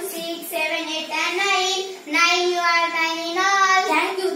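A child singing a sing-song counting tune, holding each note briefly with a short break about halfway through.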